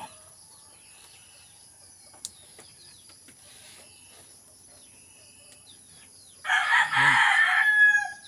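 A rooster crows once, loudly, starting about six and a half seconds in and lasting about a second and a half, over faint chirping insects.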